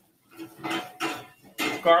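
Spatula scraping and knocking against a pan, about three short strokes, while chopped garlic and chili flakes are stirred in oil; a man's voice begins near the end.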